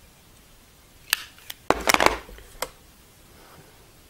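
Hard little clicks and knocks of makeup items and a hand mirror being handled: a couple of single knocks about a second in, a quick cluster about two seconds in, and one more shortly after.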